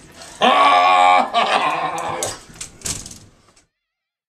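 A loud, drawn-out wailing call at a steady pitch, starting about half a second in and running in two parts to just past two seconds, followed by a few sharp knocks; the sound cuts off suddenly shortly before the end.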